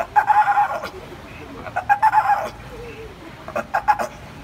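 Trained sea lion barking on the trainer's hand signal in a series of short, pitched calls, one about every two seconds.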